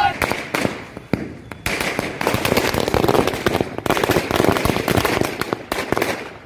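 A string of firecrackers going off on the street. A few separate bangs come first, then from under two seconds in a dense, rapid crackle of explosions runs for about four seconds and stops abruptly near the end.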